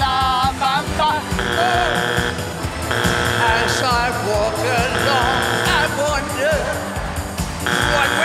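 A man singing over a Technics electronic keyboard's backing track, cut across four times by a harsh steady buzz about a second long each: the judges' buzzers going off one after another.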